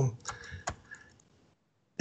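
A few short computer keyboard clicks, the last and loudest under a second in, then the sound cuts out to silence.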